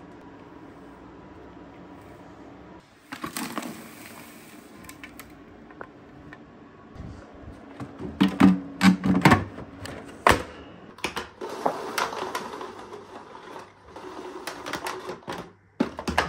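Hard plastic parts of a Dyson DC02 cylinder vacuum, the clear dust bin and cyclone, being handled and fitted together: irregular clicks, knocks and rattles, with several loud knocks in quick succession around the middle.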